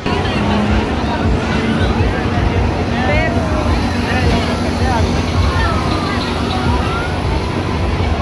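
Crowd hubbub at a fairground midway: many overlapping voices and calls, over a steady low rumble and hum.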